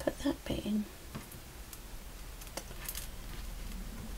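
A low muttered voice in the first second, then a few light, scattered clicks and taps as small craft pieces such as beaded wire stems are handled on a cutting mat.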